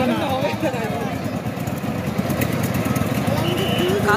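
Power tiller's single-cylinder diesel engine running with a rapid, rough low chugging, under crowd voices. A short high steady tone sounds near the end.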